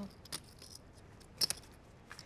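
Poker chips clicking together as a stack is handled: a few short, sharp clicks, the loudest about one and a half seconds in.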